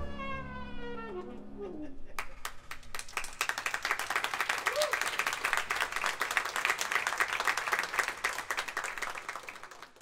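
The jazz band's last note slides down and dies away in the first two seconds. An audience then applauds from about two seconds in, and the clapping fades out near the end.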